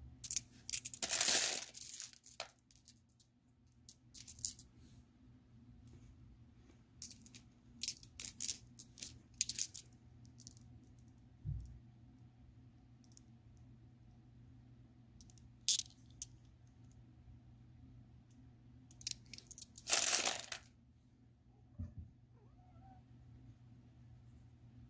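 Polished tumbled stones clicking and clattering together as they are handled, in scattered bursts, the longest about a second in and again near the end, over a faint steady low hum.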